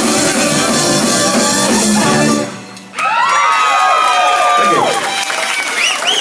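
A live band plays the final bars of a rock-and-roll number and stops dead about two and a half seconds in. After a half-second gap, the audience breaks into cheering, whoops and applause.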